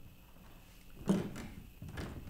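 A few soft thumps a little over a second in, with another knock near the end, against quiet room tone: footsteps crossing a stage floor.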